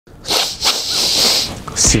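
A man sniffing hard through a blocked nose: two short sniffs, then a longer one, a hissing draw of air through congested nasal passages that let little air through.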